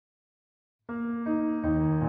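Piano accompaniment entering about a second in with two short pickup notes that lead into a held chord, at a slow, expressive tempo.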